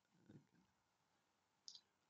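Near silence, with a faint short click near the end.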